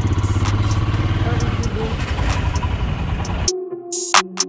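Royal Enfield Himalayan's single-cylinder engine running steadily with an even low pulse as the motorcycle rides slowly. About three and a half seconds in, it cuts suddenly to electronic music with a beat.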